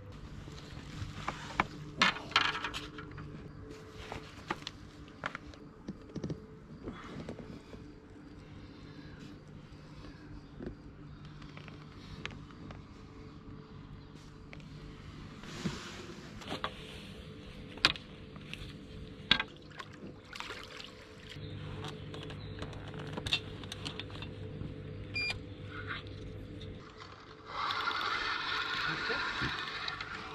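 Handling noises while landing and unhooking a fish on a rocky riverbank: scattered clicks and knocks of landing-net frame, rod and gear against stone, over a steady low hum. A louder rasping noise lasts about two seconds near the end.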